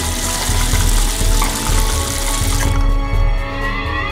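Background music with a steady low beat, overlaid with a running-water sound effect like an open tap, which cuts off about three-quarters of the way through.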